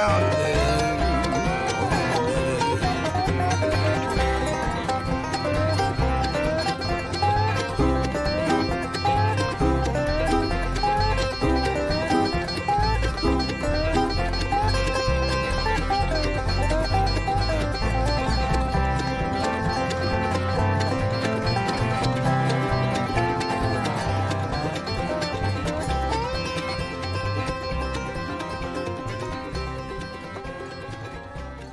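Bluegrass string band recording with dobro, playing the song's instrumental outro in quick picked licks. It fades out over the last few seconds.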